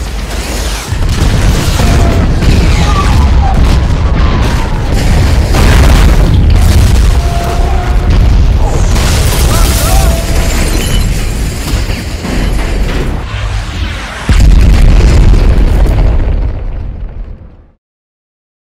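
Film sound design of an aerial bombardment: dense, continuous heavy explosions and deep rumbling booms, with crashing debris throughout. A sudden louder blast comes about three quarters of the way in, then the sound fades out to silence just before the end.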